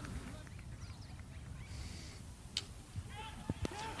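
Quiet open-air cricket ground ambience: a steady low rumble with faint distant voices calling near the end, and a single sharp click about two and a half seconds in.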